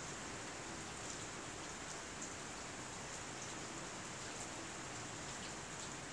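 Steady faint hiss of background noise under a pause in the narration, with a few faint ticks.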